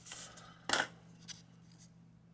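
A small cardboard battery box being handled and taken off a cutting mat: a brief rustle, then a short, sharper scrape under a second in and a couple of lighter touches.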